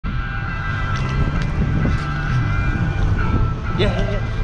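Parasail boat's engine running steadily, a constant low rumble with a steady high-pitched whine over it, and wind buffeting the microphone.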